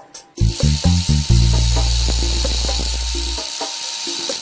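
Background music: a few short bass beats, then a long held bass note under a steady high hiss that carries on after the bass stops.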